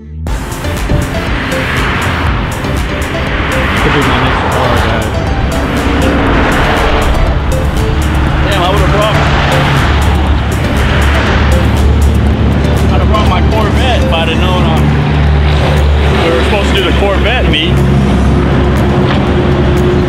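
A car engine running steadily close by, a low hum with noise swelling about every two seconds, amid road traffic.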